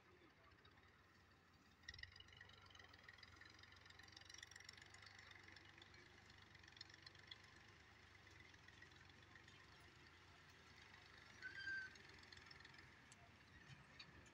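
Near silence: faint rural outdoor ambience, with a faint low hum that comes up about two seconds in and a brief high tone near the end.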